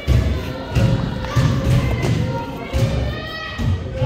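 Basketballs bouncing on a wooden gym floor: an irregular run of thuds, two or three a second, ringing in a large hall. Music plays underneath.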